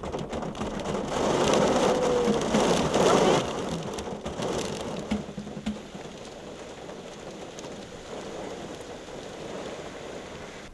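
Rain falling steadily, swelling louder from about one to three and a half seconds in, then settling to a quieter, even hiss.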